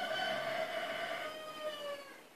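A dog giving one long, high whine that slowly drops in pitch and fades.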